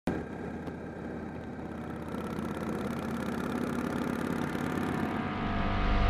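Motorcycle engine running steadily while riding, with road and wind noise, gradually getting louder.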